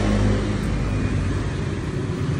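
A vehicle engine running steadily in the background, a low hum that swells a little in the first half-second and then eases.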